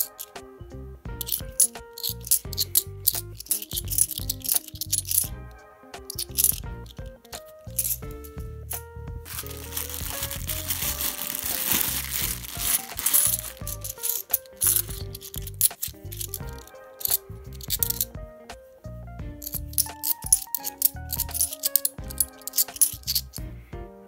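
Background music with a steady beat over £2 coins clinking together in the hand. About ten seconds in, a plastic coin bag rustles for a few seconds as coins are tipped from it.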